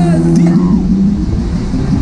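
Höpler Schunkler fairground ride running, heard from on board: wind rumbling on the microphone over a steady low drone.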